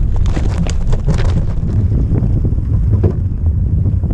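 Wind buffeting the camera's microphone: a loud, gusty low rumble.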